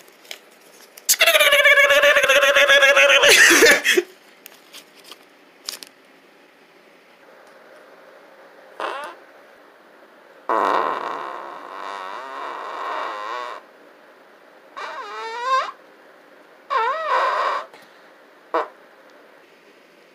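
A loud, fart-like buzzing noise about a second in, lasting nearly three seconds, followed later by a quieter rough noise and two short squeaky sounds that bend up and down in pitch.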